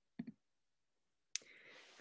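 Near silence, broken by a brief faint vocal sound near the start and then a single sharp computer-mouse click a little past halfway, followed by a faint hiss.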